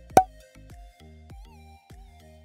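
Outro background music with a steady beat of bass notes, broken by a single loud pop near the start.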